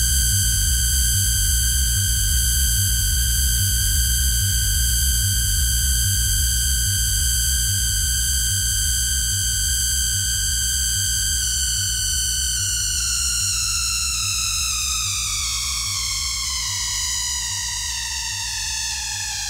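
Live electronic dance music: a sustained high synthesizer tone held over a fast pulsing bass, the tone sliding slowly downward in pitch over the last several seconds.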